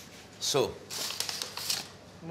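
Paper flour bag crinkling and rustling as a hand reaches in to scoop flour, a short rustle lasting about a second after a spoken word.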